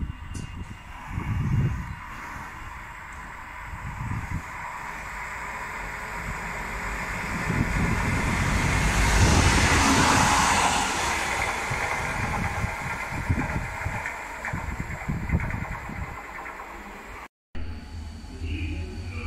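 Locomotive running on its own past the platform at speed: the rumble and rush of wheels on rail build to a peak about ten seconds in, then fade as it moves away. The sound cuts off abruptly shortly before the end.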